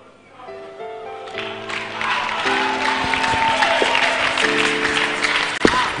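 Congregation applauding, the clapping swelling from about a second and a half in, over held keyboard chords that change every second or so.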